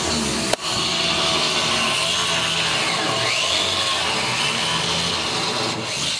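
A power grinder running steadily, grinding through stripped bolts that cannot be unscrewed.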